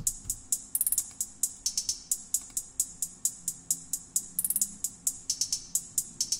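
A programmed electronic hi-hat loop played alone from a sampler. It is a steady run of short, crisp ticks broken by quick rolls, with some hits pitched higher and some lower.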